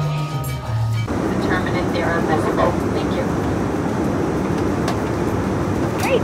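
Bar music with a steady bass line cuts off about a second in. It gives way to the steady roar of an airliner cabin, with brief snatches of voices.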